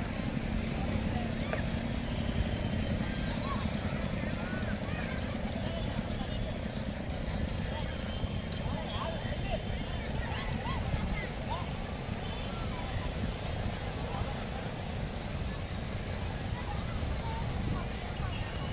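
Beach crowd ambience: many distant voices talking and calling out over a steady low rumble of wind and surf.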